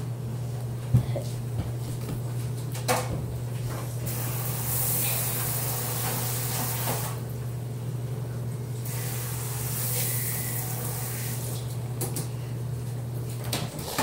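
A steady low hum with two spells of hissing a few seconds each, and a sharp click about a second in; the hum stops near the end.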